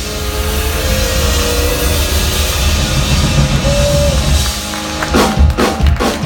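Live rock band playing an instrumental passage on drum kit, electric guitar and keyboard, with a run of loud drum and cymbal hits near the end as the song closes.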